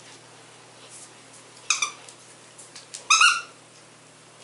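Squeaker in a plush moose dog toy squeaking as a dog bites it: one short squeak a little before two seconds in, then a louder, longer, wavering squeak about three seconds in.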